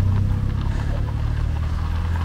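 Steady low engine rumble from a slow-moving line of classic cars.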